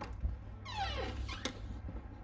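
A single animal cry that falls steeply in pitch, lasting just under a second, over a steady low rumble.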